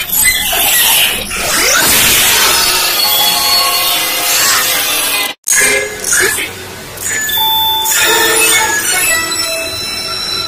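Children's TV channel logo jingles: short bursts of voices and music, broken by a sudden cut about five seconds in as one logo clip gives way to the next.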